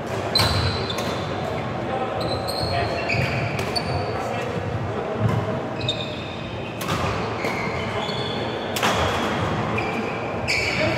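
Badminton play in a sports hall: a few sharp racket-on-shuttlecock hits, near the start and twice in the last few seconds, among short high squeaks of court shoes on the sports floor. Background voices murmur throughout in the echoing hall.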